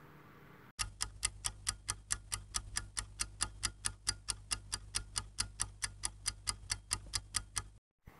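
Ticking-clock sound effect counting down as an answer timer: rapid, even ticks at about five a second over a low hum, starting just under a second in and stopping just before the end.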